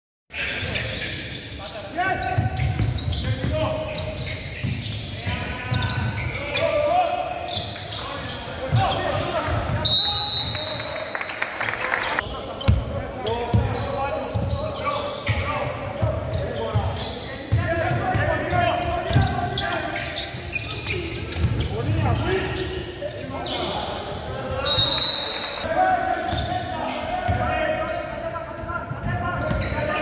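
Indoor basketball game in a large sports hall: a basketball bouncing on the hardwood court and players' voices and calls throughout. Two short, high-pitched referee's whistle blasts, about ten seconds in and again near 25 seconds.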